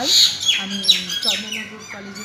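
Birds calling: a run of short squawks, each falling sharply in pitch, about two or three a second.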